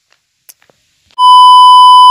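Near silence for about the first second. Then a loud, steady, high-pitched test-tone beep of the kind played with TV colour bars starts sharply and holds.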